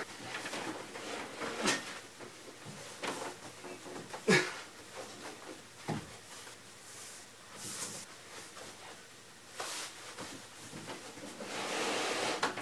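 Light knocks and bumps of a tall wooden bookcase being handled and shifted into place by hand, the loudest about four seconds in.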